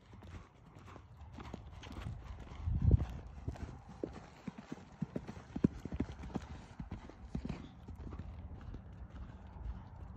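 Horse's hooves striking the ground in a running series of clip-clops, with a heavier thud about three seconds in.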